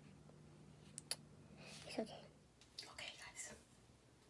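Faint whispering and mouth sounds with a few small clicks, over a low steady hum that stops about halfway through.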